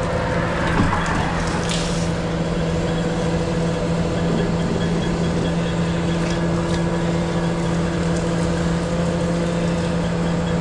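Sewer cleaning truck's engine and pump running steadily with a constant drone, with a few clicks and knocks in the first two seconds. A second, higher steady tone joins about four seconds in.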